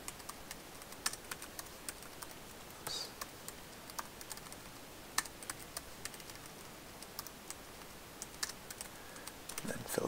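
Typing on a computer keyboard: irregular key clicks as spreadsheet formulas are entered, with a few louder taps among them.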